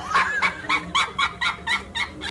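A rapid, even run of short high-pitched animal calls, about four or five a second, stopping just after the end.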